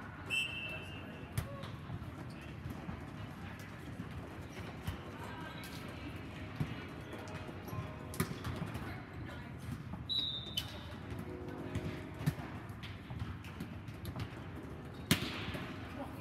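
Indoor volleyball play: scattered ball hits and thumps, the sharpest near the end, with a few short high sneaker squeaks on the sport-court floor. Distant players' voices sound under them, echoing in a large hall.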